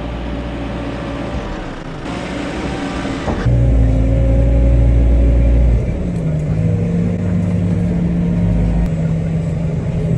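Diesel engine of a JCB telehandler running under load as its bucket works jammed dung out of a tipping trailer. About three and a half seconds in the sound switches to a louder, steady engine drone heard from inside the cab.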